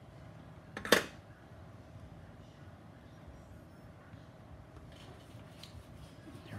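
A single sharp metallic clink about a second in, a tool being set down on the workbench. A few faint handling ticks follow near the end.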